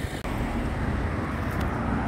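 Town-street road traffic: the steady noise of cars passing on the road, heaviest in the low end, with a brief break in the sound just after the start.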